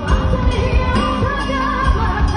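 A woman singing a Hebrew Mizrahi pop song live into a microphone over a full band backing with a steady beat of about two drum strokes a second.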